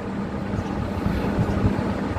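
Steady low background rumble with a constant hum underneath, in a pause between spoken sentences.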